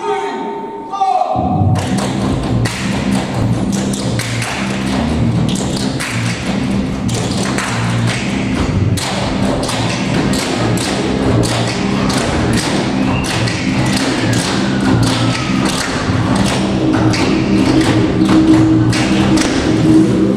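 A group of tap dancers striking the stage in unison with their tap shoes, a fast run of sharp taps several a second, over music with a steady bass beat that starts about a second and a half in.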